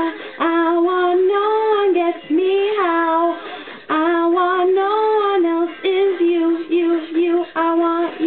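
A young woman singing solo, holding long notes that bend up and down in pitch, with short breaks between phrases.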